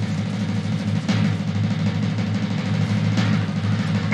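A sustained drum roll: a steady, low rumble of rapid drum strokes held throughout.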